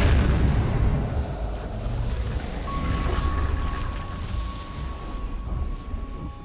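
Film-trailer sound design: a deep boom that sets in sharply and rumbles on, slowly fading over about five seconds. A thin, steady high tone enters near the middle and holds under it.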